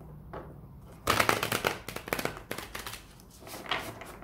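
Tarot cards being shuffled by hand: a rapid flutter of card edges for about two seconds, starting about a second in, then a shorter burst near the end.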